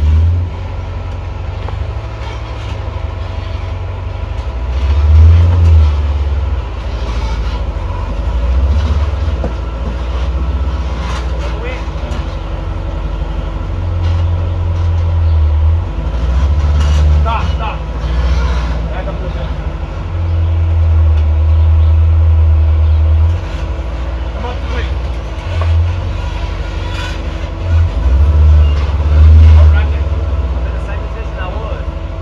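Jeep-bodied rock crawler's engine running and revving in uneven surges as it works its way up a boulder ledge, with voices talking in the background.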